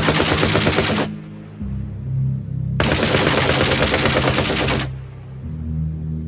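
Two long bursts of rapid automatic rifle fire, the first cutting off about a second in and the second lasting about two seconds, over low sustained synthesizer music.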